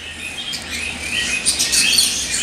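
Small birds chirping in the background, a steady crowd of short, high chirps overlapping one another.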